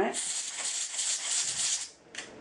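Can of compressed air sprayed into a sewing machine's bobbin case in one continuous hiss lasting almost two seconds, blowing out the lint and dust gathered inside.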